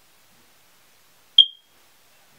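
A single short, high-pitched electronic beep about one and a half seconds in, starting with a click and dying away quickly.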